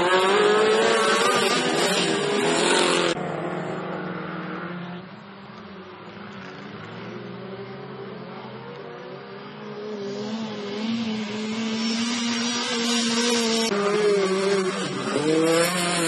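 Autocross cars' engines revving hard as they race on a dirt track, the pitch rising and falling with each shift and throttle lift. The engines are loud and close at first, fall back to a more distant running sound in the middle, then build up close again near the end.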